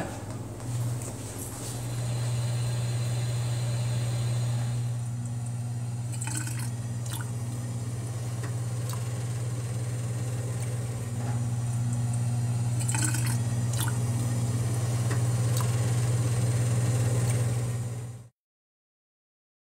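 Water running down a stainless steel sink drain over a low steady hum, with a few sharp drips.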